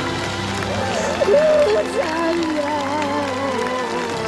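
A woman crying aloud, her voice wavering and breaking into sobs, over soft background music.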